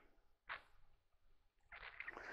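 Near silence: room tone, with one faint, brief noise about half a second in.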